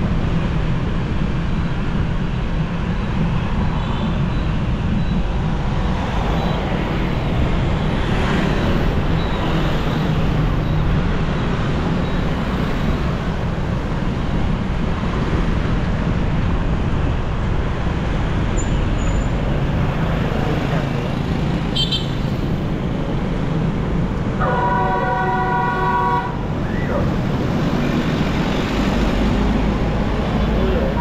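Busy street traffic of motorbikes and cars heard on the move, a steady road and engine rumble throughout. A vehicle horn sounds once for about two seconds near the end.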